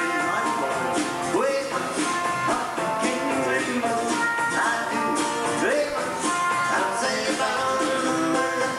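Live country band playing: strummed guitars, a drum kit and a fiddle. Several notes slide up in pitch along the way.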